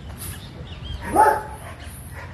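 A dog barks once, a short call about a second in, over a low background rumble.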